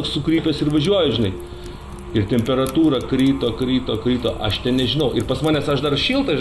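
Voices with music underneath, dipping briefly between about one and two seconds in.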